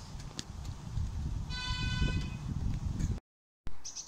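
A miniature railway locomotive sounds one toot of its horn, lasting under a second, about halfway through. Under it there is a low rumble and scattered clicks, which could be train wheels on the track. The sound cuts off abruptly a little after three seconds.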